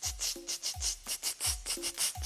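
Instrumental beat with no voice: a deep kick drum thumping regularly under quick, high percussion ticks, with a short pitched note twice.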